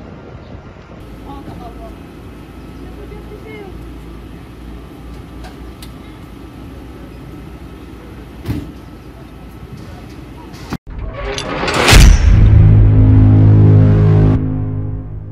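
Outdoor background noise with a low rumble and faint voices, with a single click about eight and a half seconds in. Near the end the sound cuts out briefly, then a rising whoosh builds to a loud hit and holds as a sustained low synthesizer chord: a news channel's logo sting.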